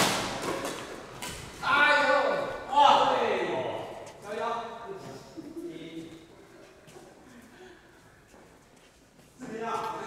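Badminton players' voices calling out in a large hall, loudest between about two and four seconds in, with a couple of sharp racket-on-shuttlecock hits in the first second or so.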